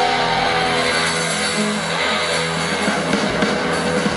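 Live rock band playing loud, with electric guitar and drum kit.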